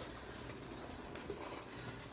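Faint, steady noise of a saucepan of rice boiling on an electric coil burner.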